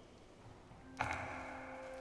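Quiet church room for about a second, then a sudden click and a held church organ chord that starts and sustains: the organ beginning the hymn.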